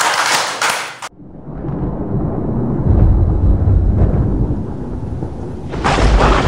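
A small group clapping and cheering for about the first second, cut off abruptly. Then a deep rumbling sound effect of an animated logo sting builds, heaviest about three seconds in, and a loud blast-like burst hits near the end.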